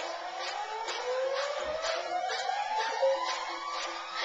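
Dance music playing, with a steady beat of about two strokes a second and a long rising tone that sweeps slowly upward.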